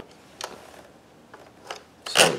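A strip of 16-gauge finish nails being slid into the magazine of a DeWalt DCN660 cordless angled finish nailer: faint metal scraping with three small clicks.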